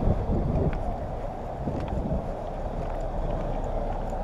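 Microphone handling noise: a steady, muffled rumble and rustle of clothing rubbing against a camera held up against someone's body, with wind on the microphone and a few faint clicks.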